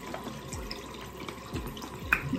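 Tap water running steadily into a sink, with a couple of soft bumps of something being handled.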